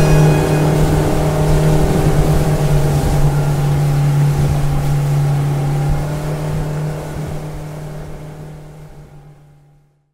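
Motorboat engine running with a steady drone. It fades out gradually over the last few seconds.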